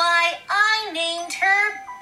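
A child's high voice reading aloud in a drawn-out, sing-song way, about four held syllables stepping up and down in pitch.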